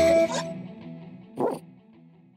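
The end of a children's song: a last held note fading away, then one short bark from a cartoon dog about a second and a half in.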